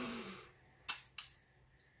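A person breathing out briefly, then two sharp mouth clicks about a third of a second apart.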